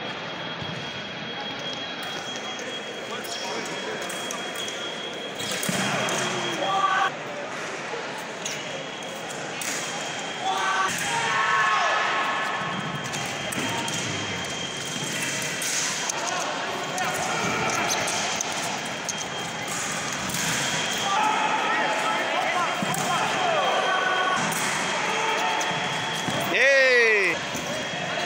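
Saber fencing in a large hall: fencers' feet stamping on the pistes amid voices, with a steady high-pitched tone running through most of it. Near the end comes a quick squeal falling in pitch.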